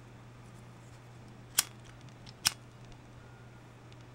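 Two sharp clicks a little under a second apart from a BIC disposable lighter being flicked, its flint wheel struck twice to light the flame.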